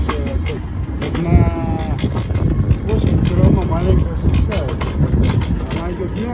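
City-street background: traffic going by and a steady low rumble, with brief indistinct voices.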